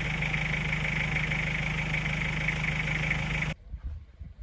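Steady mechanical hum of a small camera drone's motors and propellers in flight, a low hum with a higher whine over it, cutting off suddenly near the end.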